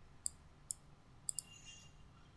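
A few sharp computer mouse clicks: four in all, the last two in quick succession.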